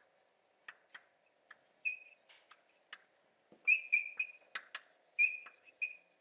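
Chalk writing on a blackboard: light taps and scratches of the chalk stick, with several short, high-pitched squeaks from about two seconds in.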